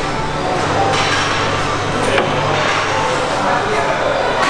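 Busy workshop noise: indistinct background voices over a steady low hum, with a sharp knock about two seconds in.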